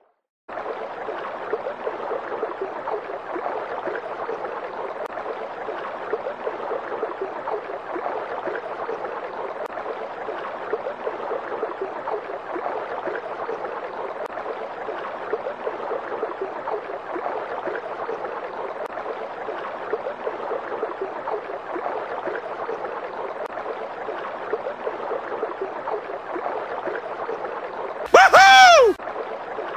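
Water of a rocky stream rushing and splashing in a steady, even wash; it cuts in just after a brief silent gap at the start.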